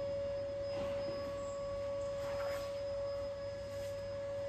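A steady, unchanging high-pitched tone like an electrical whine, with faint rustles of body movement on a rubber floor mat.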